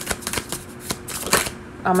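A deck of tarot cards being shuffled by hand: a quick, irregular run of light card clicks and flicks, with a sharper snap about a second and a half in.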